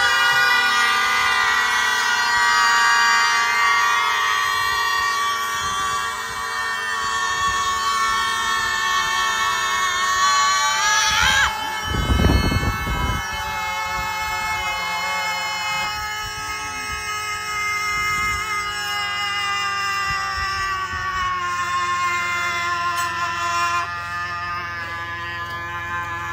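Several voices holding one long shouted note, the pitch drifting slightly down; about eleven seconds in it sweeps upward and breaks off, a short low thump follows, and a second long held note starts and carries on for the rest of the time.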